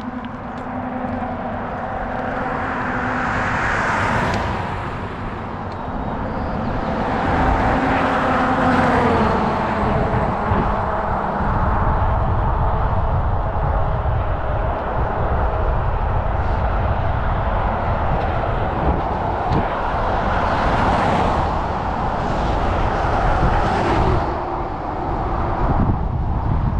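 Wind on the microphone of a moving bicycle, with motor vehicles passing on the highway: several swells of engine and tyre noise that rise and fade, one about nine seconds in falling in pitch as it goes by.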